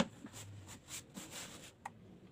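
A thin plywood panel handled against a wooden frame: a sharp knock at the start, then a second and a half of short scraping and rubbing noises as it is slid and pressed into place, and a light knock near the end.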